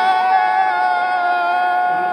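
A man's single long, high-pitched shout of joy, held on one steady note, celebrating a penalty decision.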